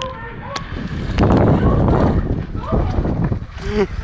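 Transparent inflatable water-walking ball rustling and thumping as the person inside shifts and scrambles up from sitting, loudest for about a second in the middle, with short voice sounds near the end.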